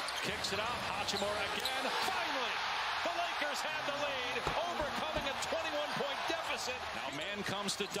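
Arena sound of an NBA game in play: a basketball bouncing on the hardwood court over a steady crowd murmur, with many voices and scattered short knocks.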